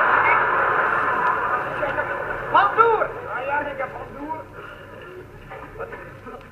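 Theatre audience laughing, loud at first and dying away over the first few seconds. About three seconds in, a voice gives a few short sounds that rise and fall in pitch, without words, and the rest is quieter. It comes through an old, narrow-band recording.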